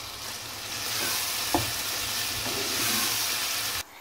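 Chopped onions and freshly added tomatoes sizzling in hot oil in a pot while being stirred with a wooden spoon, with a single knock of the spoon against the pot about one and a half seconds in. The sizzle grows louder about a second in and cuts off just before the end.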